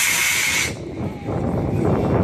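Model rocket motor hissing as the rocket climbs, cutting off suddenly under a second in at burnout; after that only wind noise on the microphone.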